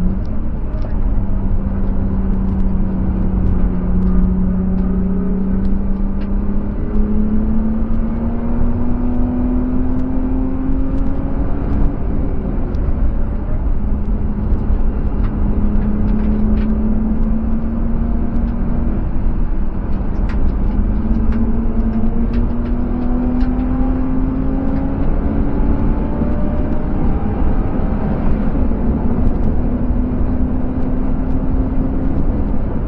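BMW E36 320i's M50B25TU 2.5-litre straight-six heard from inside the cabin at track speed, over steady wind and tyre noise. The engine note climbs under acceleration, fades briefly near the middle while the car slows for a corner, then rises steadily again as it pulls out.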